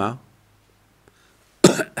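A man coughs once, a short sharp cough near the end, after a moment of quiet.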